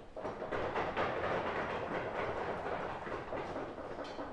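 Small audience applauding, a dense patter of handclaps that starts suddenly and goes on steadily.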